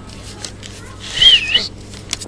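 A kitten's single high-pitched mew, wavering up and down in pitch, about a second in.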